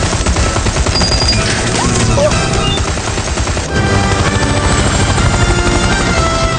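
Film action soundtrack: a helicopter's rotor chopping and its turbine running at full power on take-off, mixed with gunfire and a music score.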